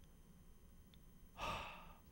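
A man's single audible breath, a soft sigh-like rush of air about a second and a half in, lasting about half a second, after a near-silent pause.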